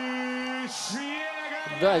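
A man's ring-announcer voice calling out over the arena PA in a long, drawn-out, sung-like note, then a hiss and a second shorter call, announcing the winner of a bout decided by the judges. A commentator's brief word comes in near the end.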